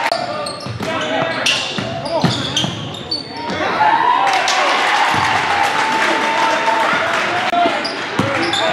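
A basketball bouncing on a hardwood gym floor as players move, with repeated sharp knocks and short high squeaks of sneakers, under players and spectators shouting.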